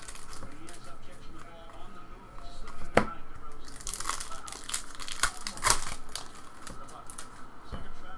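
A trading-card pack wrapper being torn open and crinkled by hand, with sharp crackles about three seconds and six seconds in.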